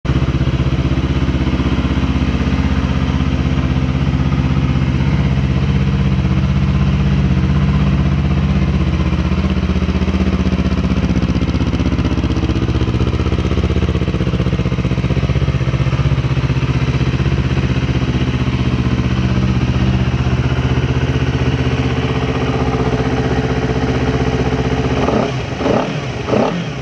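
Honda CBR250RR (MC51) 249 cc parallel-twin engine idling steadily through an aftermarket exhaust, blipped into a quick rev near the end.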